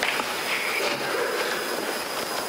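A steady hiss of background noise, with a few faint clicks and rustles.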